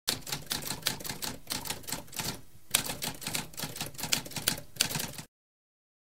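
Typewriter keys clacking in a rapid run, with a brief lull about two and a half seconds in, then stopping suddenly a little after five seconds.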